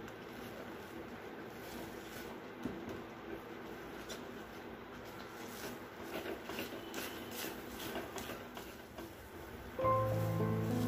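Silicone spatula stirring and scraping a thick, sticky poha-and-jaggery laddu mixture around a stainless steel pan: soft scrapes and squishes, more frequent from about four seconds in. Background music comes back loudly right at the end.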